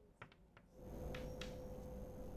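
Faint chalk strokes on a blackboard: a few short scratches, with a steady hum coming in about a second in.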